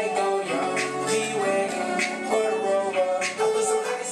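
Bowed violin playing a sliding, sustained melody over a backing track with a steady drum beat.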